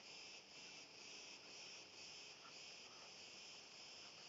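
Faint insect chirping, pulsing evenly about twice a second, over otherwise near silence.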